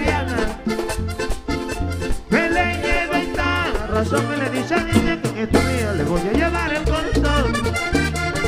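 Live vallenato music: a button accordion plays a lively melody over a deep, steadily pulsing bass line and crisp rhythmic percussion.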